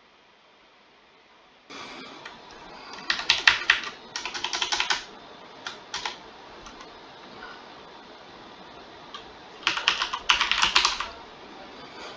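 Computer keyboard typing: after a quiet first second and a half, two quick runs of keystrokes with a couple of single key presses between them.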